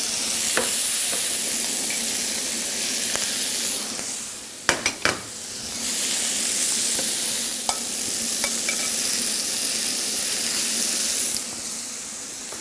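Scampi, cherry tomatoes, spinach and pasta sizzling in olive oil in a hot frying pan while being stirred with tongs. The steady sizzle dips about halfway, where a few sharp knocks come, then picks up again and eases off near the end.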